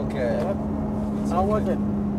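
BMW M3 Competition's twin-turbo straight-six heard from inside the cabin, running steadily at low revs and easing slightly down in pitch as the car is taken slowly, over a low road and tyre rumble.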